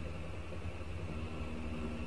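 A faint, steady low hum of room background noise with a few steady low tones, like a fan or an electrical appliance running.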